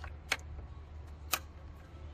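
Plastic wiring-harness plug being pushed onto a MAP sensor, giving short sharp clicks: one at the start, a louder one about a third of a second in, and another a little past one second in, as the connector seats and latches. A faint steady low hum lies underneath.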